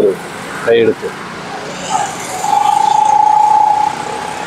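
Street traffic noise, with a vehicle horn held as one steady tone for about two and a half seconds in the second half.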